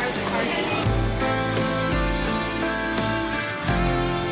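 Background music led by guitar over a low bass line.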